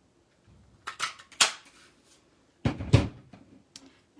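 Hand-held craft paper punch clicking as it is pressed and cuts a shape out of cardstock, the sharpest click about a second and a half in. About three seconds in, a heavier knock, the loudest sound, as the punch is set down on the table.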